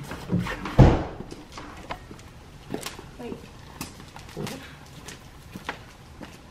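A lariat being swung and thrown on a concrete driveway: one heavy thump about a second in, then short swishes of the rope about once a second, with faint voices in the background.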